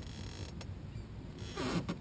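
Faint creaking from a baitcasting fishing reel being handled, with one short click about half a second in; a man's voice begins near the end.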